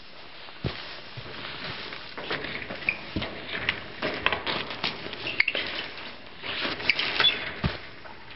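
A person climbing over a barbed-wire fence by a wooden post: clothing and backpack rustling, with many scattered clicks, knocks and scrapes from boots and hands on the post and wires, busiest in the second half.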